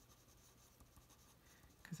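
Faint scratching of a pencil writing on paper.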